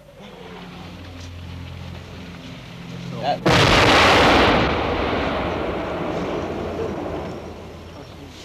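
An artillery shell exploding about three and a half seconds in: a sudden loud blast followed by a long rumble that slowly dies away. A low steady hum builds up before the blast.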